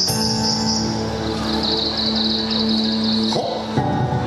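Yosakoi dance song playing: sustained chords over a long held low note that breaks off in a quick pitch slide about three and a half seconds in, with new notes entering right after.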